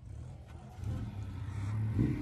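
Off-road 4x4's engine running at low revs, a low rumble that grows gradually louder.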